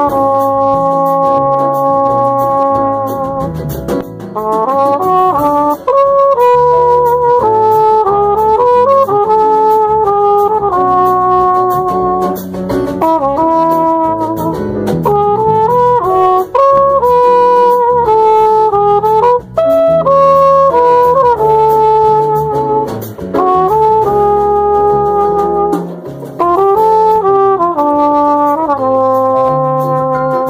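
A brass horn playing a jazz samba melody in long held notes and short phrases, over a bass line that moves from note to note.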